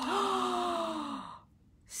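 A woman's long, breathy gasp of shock, its pitch slowly falling, lasting about a second and a half before it stops.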